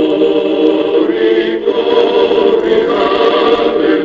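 Choral background music, voices holding long sustained chords that change a couple of times.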